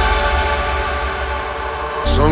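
Hardstyle mix in a breakdown: a held synth chord over a steady low bass drone, with no kick drum, slowly dropping in level.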